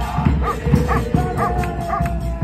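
Football fans chanting to drum beats, with a dog barking repeatedly over the crowd.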